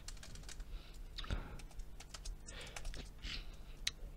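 Typing on a computer keyboard: quiet, irregular keystroke clicks.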